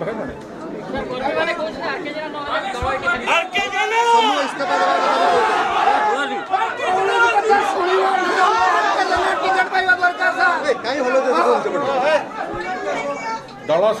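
Several people talking at once, their voices overlapping into continuous chatter.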